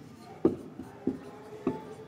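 Marker pen writing on a whiteboard: short separate strokes, three of them stronger, a little over half a second apart.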